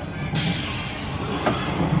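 Train running noise heard from inside the moving car, with a sudden loud high hiss about a third of a second in that fades away over about a second, and a sharp click about midway.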